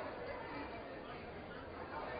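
Steady murmur of many people talking at once in a large, echoing chamber, with no single voice standing out.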